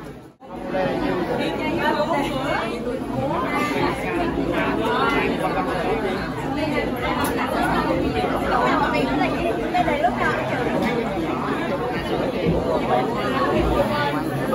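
Many people talking at once: dense, overlapping chatter with no single voice standing out. The sound drops out for a moment just after the start, then the chatter resumes.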